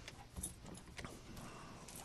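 Faint computer mouse clicks, about three, as points are placed one by one on a curve.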